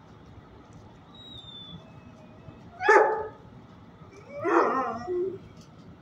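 A dog barking twice: one short, sharp bark about three seconds in, then a longer bark about a second and a half later.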